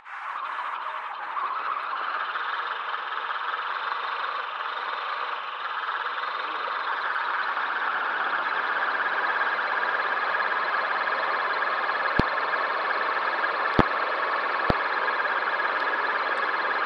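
RC rock crawler's electric motor and gearbox running steadily, with its tyres on gravel, heard up close from a camera mounted on the chassis and growing slightly louder. A few sharp clicks come in the last few seconds.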